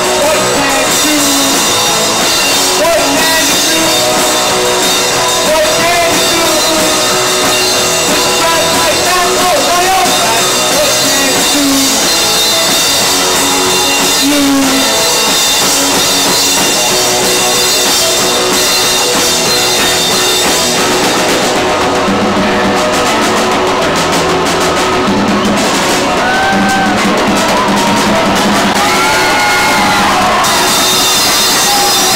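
A rock band playing loud and live: drum kit, electric guitars, bass and keyboard through amplifiers and PA speakers.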